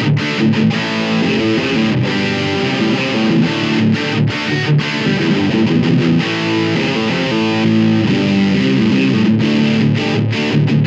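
2019 Gibson Explorer Tribute electric guitar on its bridge pickup, one of its hot ceramic humbuckers, played through a distorted amp. It plays overdriven riffs and chords with short stops, and rings more steadily over the last couple of seconds.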